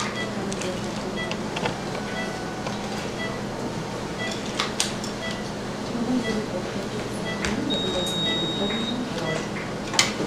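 Operating-room patient monitor beeping steadily, a short high beep about every 0.6 seconds in time with the patient's pulse, over a constant hum of equipment. There are a couple of sharp clicks, and a longer, higher steady tone sounds near the end.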